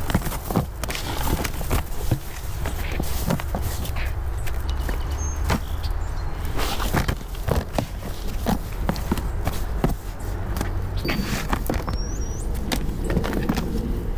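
Gloved hand scooping and spreading compost over perlite in a plastic bin: irregular crunching and rustling of the soil mix, over a steady low background rumble.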